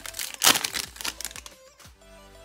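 Foil trading-card pack wrapper crinkling as it is torn open, loudest about half a second in and dying away after about a second.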